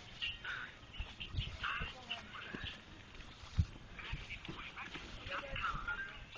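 Outdoor ambience of short, scattered high-pitched calls and distant voices, with a few low thumps of wind or handling on the phone's microphone.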